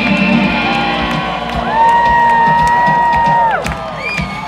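A live electric blues-rock band at the end of a song: the last guitar chord rings out and fades over scattered crowd cheers and claps. About midway, a single high note is held for about two seconds and cuts off near the end.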